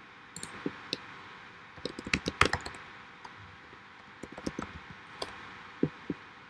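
Laptop keys and clicks tapped at irregular intervals, with a quick cluster of louder clicks about two seconds in.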